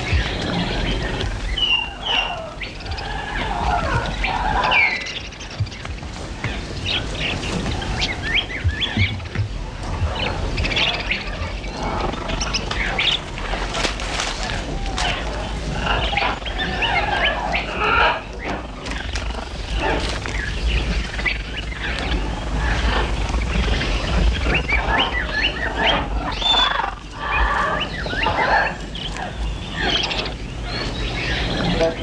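Dense jungle soundscape: many short bird chirps and animal-like cries, one after another, over a steady low rumble.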